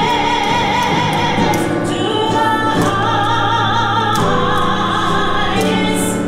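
A woman singing solo into a microphone, holding long notes with vibrato.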